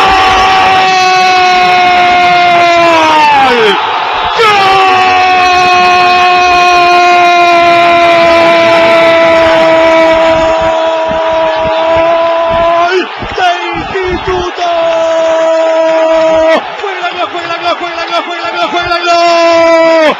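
A radio football commentator's long drawn-out goal cry, his voice held on one high, steady note for seconds at a time. A first cry sags in pitch and breaks off about four seconds in, a second is held for about eight seconds, a shorter one follows, and another begins near the end.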